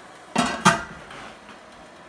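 Metal lid set down on a large canner pot: two clanks about a third of a second apart, each ringing briefly.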